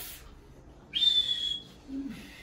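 A person whistling: one short, high, piercing whistle about a second in, held briefly with a slight downward slide, over a breathy hiss.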